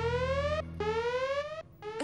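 Cartoon electronic sound effect: a synthesized tone sweeping upward in pitch twice in quick succession, each sweep about three-quarters of a second, like a siren-style whoop. A low drone under it fades out about halfway through.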